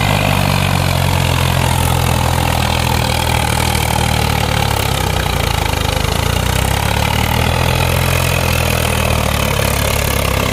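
Two diesel tractor engines working hard under heavy load: a Swaraj 744 XT hauling a fully loaded trolley up a sandy slope while a second tractor tows it on a chain. The engines give a steady, loud low drone that wavers slightly.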